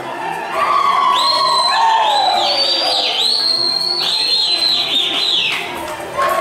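Live Romanian folk dance music from a string band, with high whistles sliding up and down over it from about a second in until near the end.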